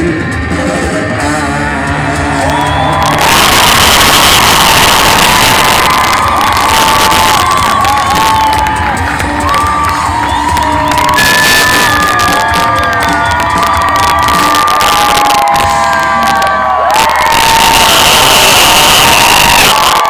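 A rock band's final chord ringing out for about three seconds, then a large live crowd cheering, shouting and whistling loudly to the end of the song.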